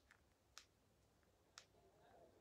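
Near silence broken by faint, sharp clicks: a small one right at the start, then two clearer ones about a second apart.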